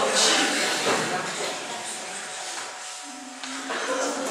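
Indistinct, quiet talking and room noise, fading over the first few seconds, with a short steady low tone lasting about half a second near the end.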